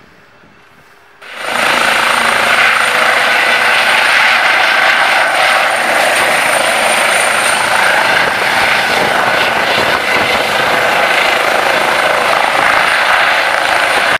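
Trauma helicopter running on the ground, its turbine engines and rotor making a loud, steady rushing noise with a high whine. The sound cuts in abruptly about a second in and holds steady.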